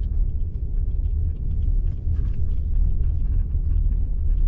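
A car driving on a snowy road, heard from inside the cabin: a steady low rumble of tyres and engine.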